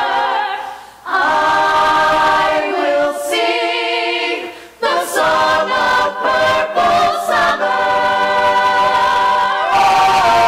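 Mixed male and female ensemble singing sustained chords in harmony, unaccompanied. The singing breaks off briefly about a second in and again just before the fifth second, then resumes.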